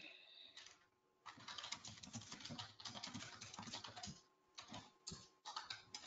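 Faint computer keyboard typing: rapid keystrokes in a run of about three seconds starting a second in, then another run near the end.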